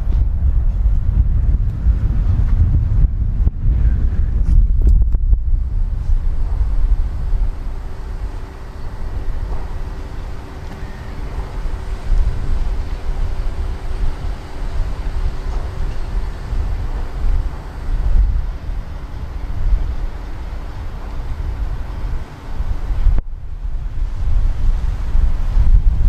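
Wind buffeting an outdoor microphone: a heavy low rumble that rises and falls in gusts, with a faint steady hum underneath for part of the time.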